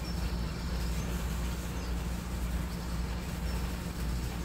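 A steady low hum with faint background hiss and no distinct handling sounds.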